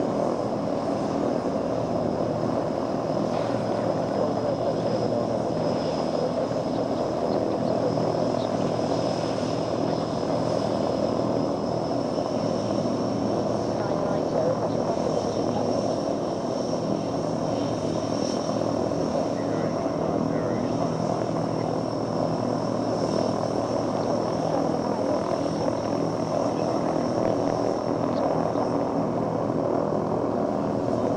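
Aircraft engines running steadily: a continuous low drone with a steady high whine above it that edges up in pitch partway through.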